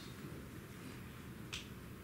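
Quiet room tone in a pause between spoken sentences, with a single short faint click about one and a half seconds in.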